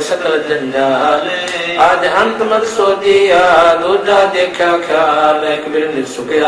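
A man's voice chanting Hindi devotional verses in a slow melody, drawing the syllables out into long held notes.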